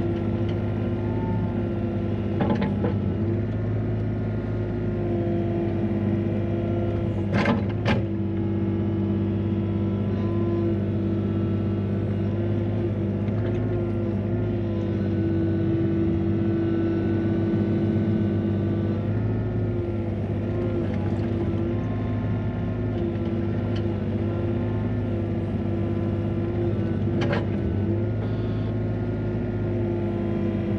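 Excavator's diesel engine and hydraulics running steadily while digging and swinging soil, heard from inside the cab. A few sharp knocks sound over it, a close pair about a third of the way in and another near the end.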